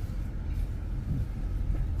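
Car driving slowly, a steady low rumble of engine and road noise heard from inside the car.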